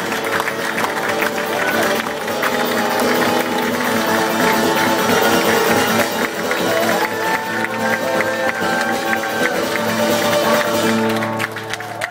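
Acoustic guitar strummed live by a solo performer: steady ringing chords near the close of a song, easing off briefly just before the end.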